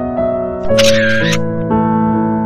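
Background keyboard music with a steady melody, and a camera shutter sound about a second in: a double click with a short bright burst between.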